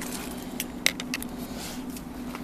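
A short jingle of car keys with a few sharp clicks, the loudest about a second in, over a steady low hum.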